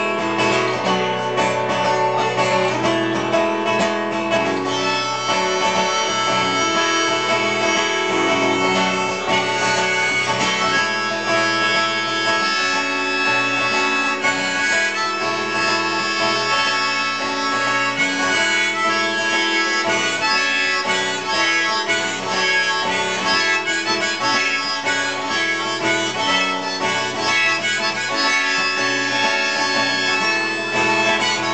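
Live acoustic guitar strummed under a harmonica playing an instrumental break, with no singing.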